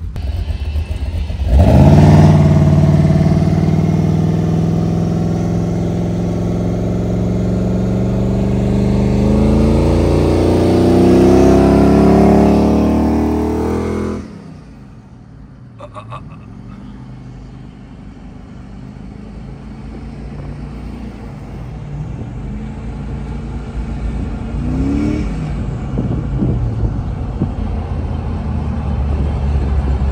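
Batman Tumbler replica's engine running loud as it pulls away, its pitch sinking and then climbing steadily as it accelerates; it is running rich on race gas. About halfway through it cuts off suddenly to a quieter engine and road sound heard from inside a following car, with a brief rise in revs and a slow build toward the end.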